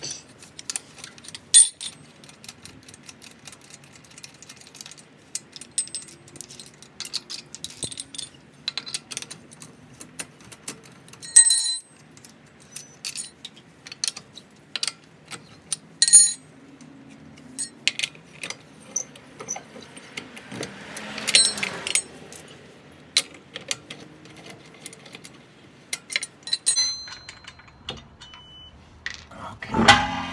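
Loosened steel lug nuts being spun off a car's alloy wheel by hand: a steady scatter of small metallic clicks and rattles, with a few louder ringing clinks as nuts knock together or are set down.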